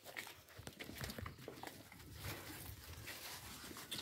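Faint scuffling and snuffling of a litter of puppies jostling around their mother on a sack and dusty ground, with many small irregular scuffs and clicks.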